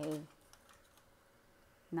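Near silence: room tone with a few faint, short, light clicks, as of painting tools being handled.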